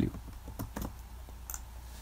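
A few separate computer keystrokes and clicks as a short number is typed into a field.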